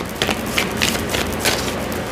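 A deck of tarot cards being shuffled by hand: an uneven run of soft card clicks and rustles.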